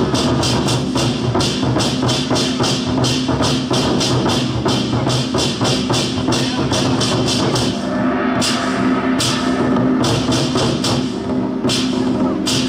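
Ensemble of large Taiwanese war drums (zhangu) beaten with sticks in a fast, even rhythm of about four strokes a second, over a sustained low backing tone. About two-thirds of the way through the rhythm thins to a few single, widely spaced strokes, then picks up again at the end.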